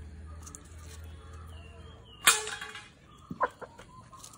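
A single sharp metallic clang with a short ringing tail about two seconds in, from a stainless steel plate being knocked to shake out chicken feed, followed by a few lighter knocks; hens clucking faintly while they feed.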